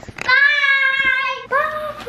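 A young girl singing out in a high voice: two long held notes, the second starting about halfway through.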